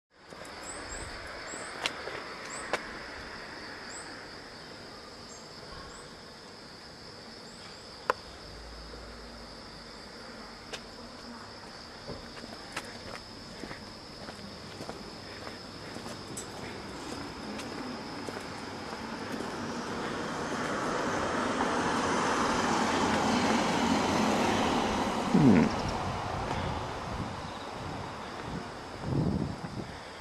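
Steady high drone of insects, with a motor vehicle passing along the street: its noise swells over several seconds to its loudest a little after the middle, then fades. A few sharp clicks sound in the first seconds, and two brief low falling sounds come near the end.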